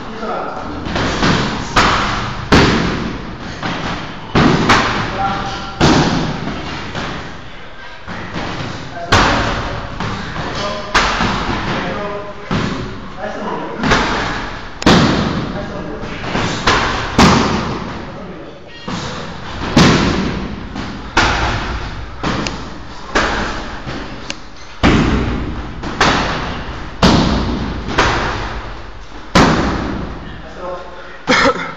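Muay Thai kicks and punches landing on Thai pads and a heavy bag: a sharp slapping thud about once a second, each followed by a short echo.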